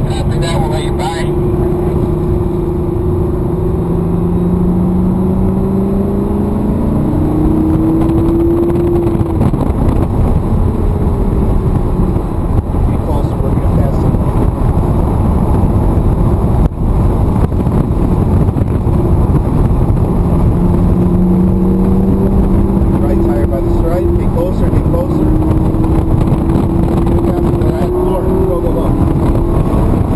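Lamborghini Gallardo's V10 engine under hard acceleration on a race track, heard from inside the cabin: its note climbs steadily through the first several seconds and climbs again in the last third, with heavy road and wind rumble between.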